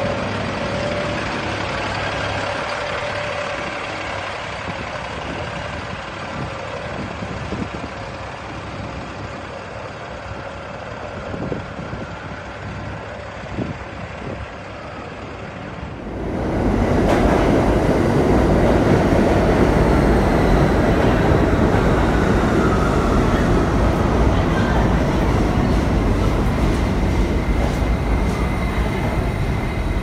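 Street traffic with a bus engine running steadily, then, about halfway through, a sudden cut to a subway train running loudly through a station, with a faint high wheel whine over its rumble.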